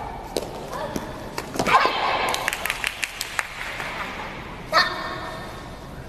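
Players' shouted calls in a large echoing sports hall, a short one after a second in and another near five seconds, with a quick run of sharp smacks, likely hand claps, in between and a few single knocks.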